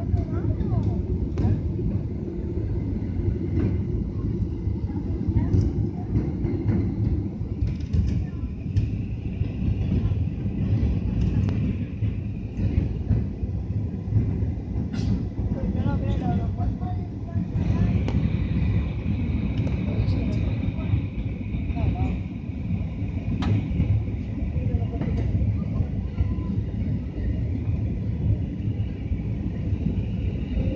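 Steady cabin rumble of a Ryanair Boeing 737 in flight with its flaps extended, descending: engine and airflow noise heard from inside the passenger cabin. A higher steady whine joins the rumble a little past the halfway point.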